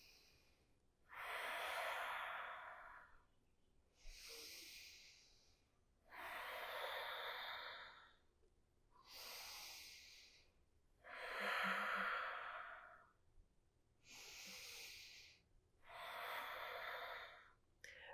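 A woman's slow, audible yoga breathing, paced with slow seated twists. There are about eight breaths, alternating shorter, softer, hissy ones with longer, fuller ones of about two seconds each.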